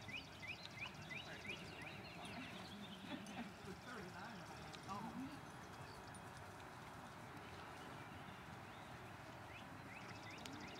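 Faint hoofbeats of a horse walking on arena sand, with a bird giving a run of short repeated chirps in the first two seconds and a faint distant voice around the middle.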